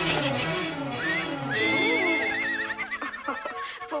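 Cartoon water splash fading out, then animated carriage horses whinnying with laughter, a high wavering whinny, over orchestral film score.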